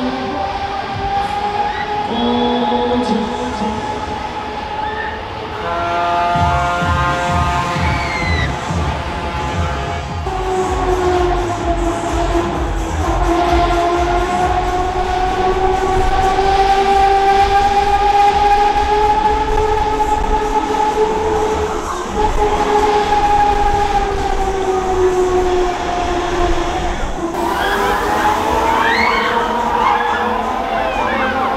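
Funfair ride sound system playing long held, horn-like chord tones that waver slowly in pitch over a low pulsing beat. Quick high-pitched glides come in near the end.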